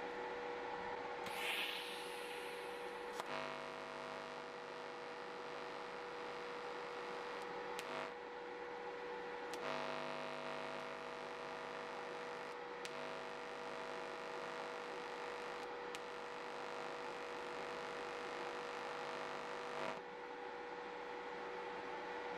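TIG welding arc on steel giving a faint, steady electric hum that comes in about three seconds in and runs in stretches with short breaks until near the end, over a constant whine. A short hiss sounds about a second and a half in.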